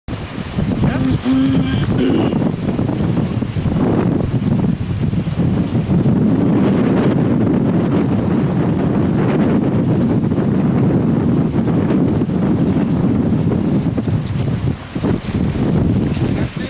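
Wind buffeting the microphone outdoors: a loud, steady low rumble that runs through the whole stretch with only small dips.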